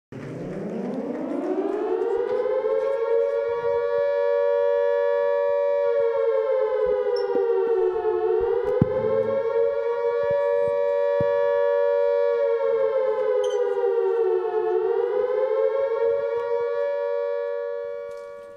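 A siren winds up from a low pitch to a loud steady wail, sags in pitch twice, and fades out near the end.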